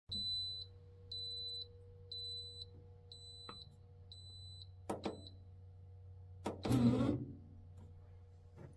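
Neretva bread maker beeping five times, high and evenly spaced about a second apart, over the low steady hum of its kneading motor. A couple of clicks follow, then a louder knock with a brief rattle near the end.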